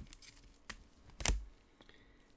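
Light clicks and taps from handling trading cards, the loudest a sharp knock about a second and a quarter in.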